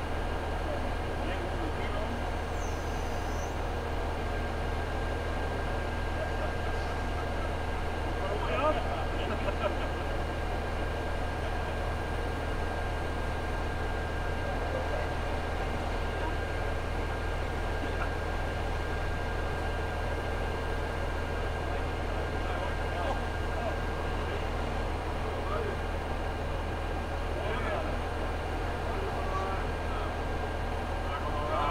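Mobile crane truck's diesel engine running steadily with a low, even hum, faint voices underneath.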